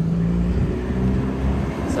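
A vehicle engine running with a steady low hum; its pitch shifts about half a second in.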